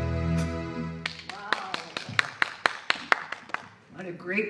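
A band's final held chord fades out, then a few people clap sparsely for about two and a half seconds.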